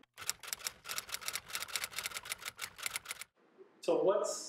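Typewriter typing sound effect: a rapid, even run of key clicks, about eight a second, that stops abruptly after about three seconds. It accompanies on-screen question text being typed out letter by letter.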